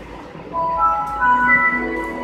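Computer startup chime after a system restart: a few electronic tones enter one after another from about half a second in, climbing in pitch and held together as a chord.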